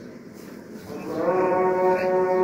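A man's long, drawn-out vocal cry held at a steady pitch, a playful mock moan rather than words, starting about a second in after a quieter moment.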